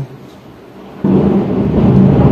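A loud low rumble of thunder breaks in suddenly about a second in and keeps rolling, in a heavy rainstorm.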